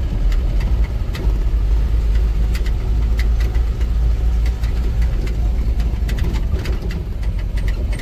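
Vehicle engine running while driving on a rough dirt road, heard from inside the cab: a loud, steady deep rumble with frequent sharp knocks and clatters from the cab over the bumps.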